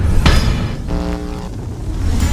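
Logo-intro sound effects: a heavy bass rumble with a sharp hit about a quarter second in, and a short buzzing pitched tone about a second in.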